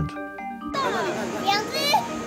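Children's voices and crowd chatter, starting suddenly under a second in, with soft background music underneath.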